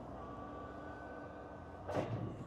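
Steady outdoor background hum with faint steady tones running through it, and a short sharp knock near the end.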